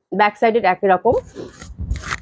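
A woman speaks for about a second, then fabric rustles as a dress piece is unfolded and shaken out to be held up.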